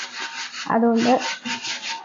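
A hand scrubbing an aluminium pot with a gritty cleaning paste, making a rough, scraping rub in quick repeated strokes. It grows louder about two-thirds of a second in.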